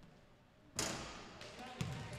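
A basketball free throw hitting the rim about three-quarters of a second in: one sharp clang that rings on in the gym, followed by a couple of lighter knocks as the ball comes off.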